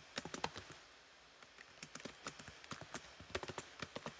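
Typing on a computer keyboard: a quick run of key clicks, a pause of about half a second just before a second in, then more scattered keystrokes that come closer together towards the end.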